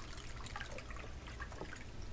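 Water trickling faintly as it is poured from an infuser pitcher into a drinking glass.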